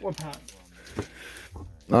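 Chrome baseball trading cards being handled and flipped through in the hand: soft sliding with a few light clicks, one a little sharper about halfway through. A man's voice comes in near the end.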